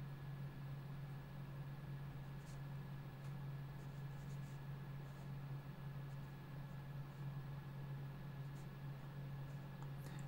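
Faint, light scratching of a Sakura Pigma ink pen on sketchbook paper as short strokes are drawn, over a steady low hum.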